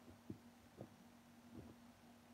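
Faint footsteps of rubber slide sandals on a hard floor: three soft, light thuds over a low steady hum.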